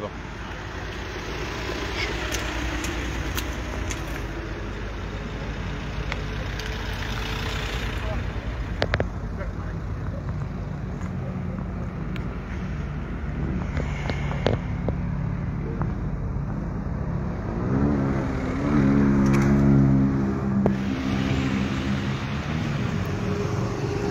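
Steady street traffic noise with indistinct voices in the background. A vehicle's engine rises in pitch and grows louder about eighteen seconds in, then fades a few seconds later.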